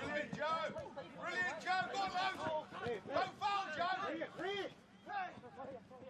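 Indistinct voices at a football match: several people talking and calling out at once, none clear enough to make out, with no single loud voice.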